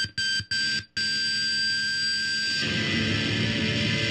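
Heavily distorted electric guitar through a Mesa/Boogie amp, playing stop-start chops with three sudden dead stops in the first second. A high, piercing tone is held over the chords until about two and a half seconds in, then the riff carries on without it.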